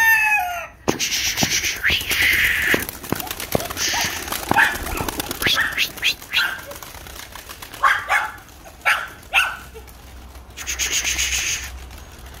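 Domestic pigeons' wings flapping in several noisy bursts as the birds take off, with a rooster's crow falling in pitch and ending about a second in.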